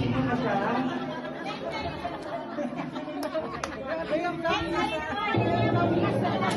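Several people talking and exclaiming over one another, with a couple of sharp clicks about three seconds in. Music comes back in near the end.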